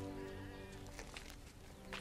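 Film score music with long held notes that fade away about halfway through, with a few faint clicks.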